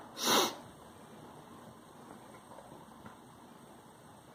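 A person sneezes once, a short sharp burst near the start, over faint steady hiss.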